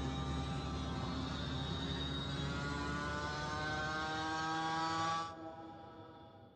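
Running noise of a moving vehicle: a steady rush and rumble with a whine that slowly rises in pitch, cut off sharply about five seconds in.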